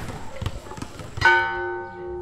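A bell struck once, a bit over a second in, ringing on in several steady tones that fade slowly; before it, scattered sharp knocks and faint voices.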